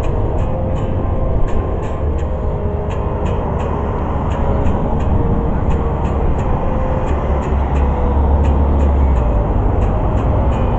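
Acoustic guitar strummed in a steady rhythm, about three strokes a second, under a heavy low rumble that swells about seven seconds in.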